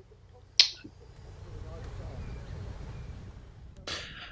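A single sharp click about half a second in, then a low, steady rumbling noise.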